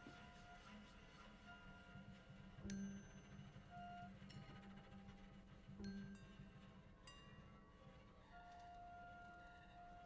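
Sparse, quiet free-improvised music: about five light metallic percussion strikes, spaced a second or more apart, each ringing on like a chime, over a faint sustained high tone that grows steadier near the end.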